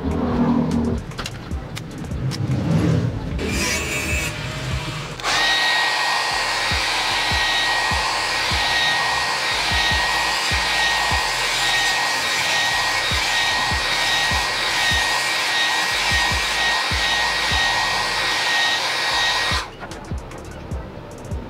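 Amstar handheld hair dryer switched on about five seconds in and running steadily, a rushing blow of air with a constant high whine. It is warming a stick-on rubber deck protector pad, and it cuts off just before the end.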